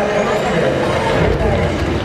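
Arena public-address sound during player introductions: a voice over a loud, dense, steady wash of sound.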